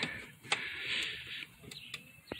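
A metal bolt being pushed by hand through a plastic steering-wheel hub and its shaft: a sharp click about half a second in, a brief light scrape, and another click near the end.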